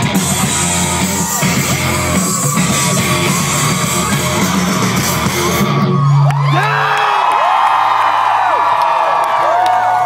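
Hard rock band playing loud live, heard from within the crowd; the song ends about six seconds in with a last low note held for about a second. The crowd then cheers and whoops, with many high yells.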